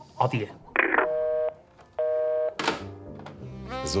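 Telephone line after the other party hangs up: a click, then two evenly spaced busy-tone beeps, each about half a second long, heard through a handset.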